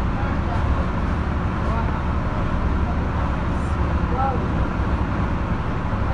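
A steady low rumble, like a running engine or road traffic, with faint chatter of voices over it.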